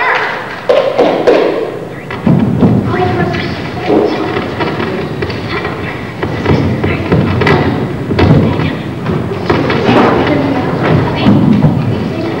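Repeated dull thumps and knocks amid people's voices and music.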